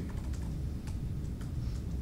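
A few scattered light clicks over a steady low hum.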